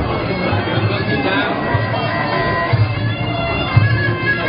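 Muay Thai sarama fight music: a reedy pi java (Thai oboe) playing a wavering melody over low drum beats that fall about once a second.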